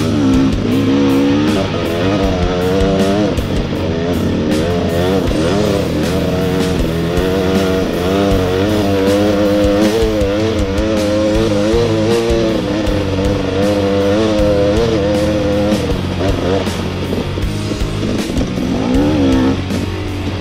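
Dirt bike engine revving while climbing a dirt trail, its pitch rising and falling over and over, mixed with guitar rock music.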